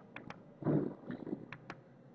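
A few faint clicks of a computer mouse scroll wheel as a Word document is scrolled, with a brief low vocal murmur from a man about a second in.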